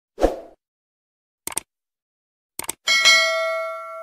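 Subscribe-button animation sound effects: a brief low hit, two quick clusters of mouse-style clicks, then a bright notification-bell ding about three seconds in that rings and slowly fades.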